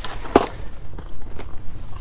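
A Rapala fish-measuring (bump) board set down on the ice with one sharp knock, followed by lighter clicks and rustles of handling, over a steady low wind rumble.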